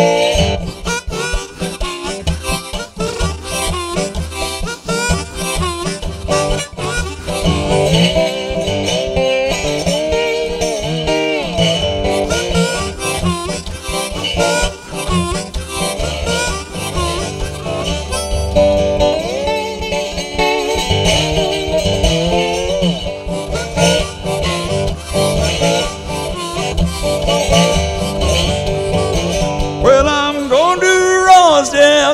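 Harmonica in a neck rack playing a blues solo over a Dobro resonator guitar played with a slide, the harmonica notes bending up and down.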